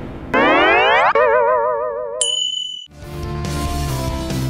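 Cartoon comedy sound effects: a quick rising sweep that breaks into a wobbling boing, then a short high ding. After a brief gap, background music starts about three seconds in.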